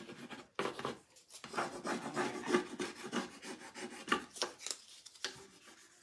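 A hand burnishing tool rubbing a rub-on decor transfer onto a painted wooden board, a run of quick, irregular scratchy strokes that grow fainter near the end. The rubbing is pressing the image off its backing sheet onto the wood.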